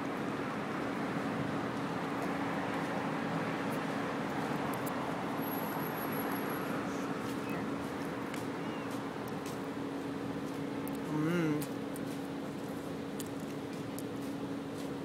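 Steady street traffic noise with a constant low hum. About eleven seconds in, a brief wavering voice stands out as the loudest sound.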